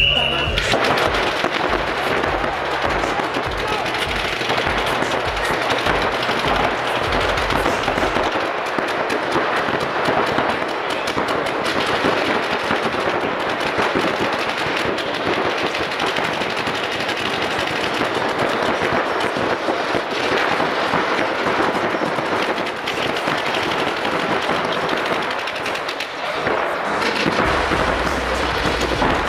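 Paintball markers firing fast strings of shots throughout, many shots a second. Background music with a steady bass beat runs underneath for roughly the first eight seconds and comes back near the end.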